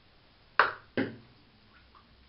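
Two sharp knocks about half a second apart, each dying away quickly: the hand-made wooden crankbait knocking against the hard end of the bathtub as it is pulled up out of the water.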